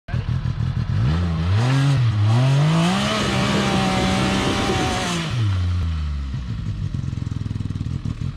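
Arctic Cat Wildcat XX side-by-side's three-cylinder engine revving under load as it climbs a steep dirt bank. The pitch rises about a second in and wavers, then holds high for a couple of seconds. It drops back to a low idle near the end.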